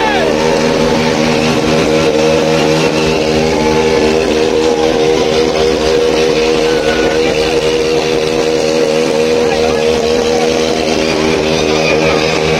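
Motorcycle engine held at high revs in a steady, slightly wavering note during a rear-tyre burnout.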